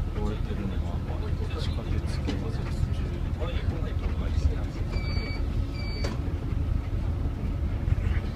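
Steady low rumble of a city bus's engine and tyres heard from inside the moving bus, with voices faintly in the background. About five seconds in come two short high electronic beeps, a second apart.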